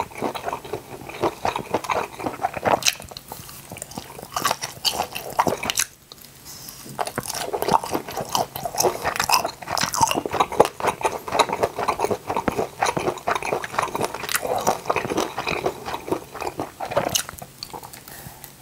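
Close-miked chewing and biting of octopus skewers: dense, irregular wet clicks and crackles of a mouth eating, pausing briefly about six seconds in.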